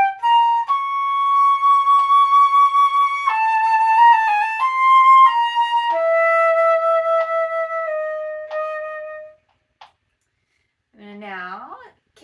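Solo concert flute playing a slow etude passage with quick grace notes worked in. It goes note by note with several long held notes, a short fluttering figure about four seconds in, and ends on a long low note about nine seconds in.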